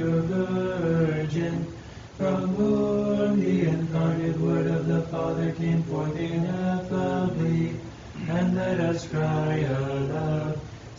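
Orthodox Vespers chant: voices singing a hymn in long held notes on a mostly steady pitch, moving in small steps, with short breath pauses about two seconds in and again near eight seconds.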